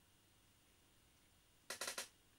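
A quick cluster of three or four sharp plastic clicks near the end, lasting about a third of a second: a clear plastic model-plane canopy being moved about on paper.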